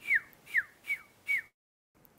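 Four short whistled chirps, each falling in pitch, about half a second apart, standing in for sparrows' peeps. The track then cuts to dead silence.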